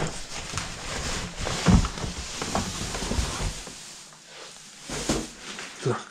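Cardboard box and plastic wrapping rustling and scraping as a bagged item is lifted out of the box, with a dull thump about a second and a half in. The handling noise dies down after about three and a half seconds.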